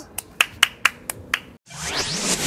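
Six sharp hand claps in an even rhythm, about four a second. Near the end, a rising whoosh of a video transition sound effect begins.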